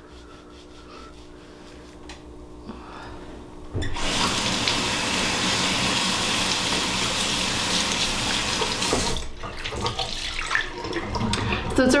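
Bathroom sink tap running into the basin: it comes on suddenly about four seconds in, runs steadily for about five seconds, then is turned off, followed by a few small knocks.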